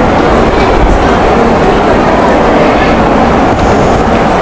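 A loud, steady rumbling noise with faint voices underneath it.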